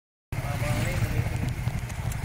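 Motorcycle engine idling steadily close by, a low rumble, with faint voices behind it.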